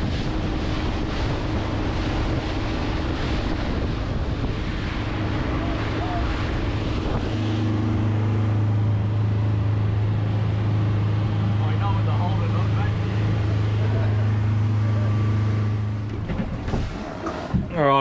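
Whittley Sea Legend 7.3 cabin boat running at speed across open sea: a steady engine drone under rushing wind and water noise. About seven seconds in, the engine hum becomes stronger and steadier.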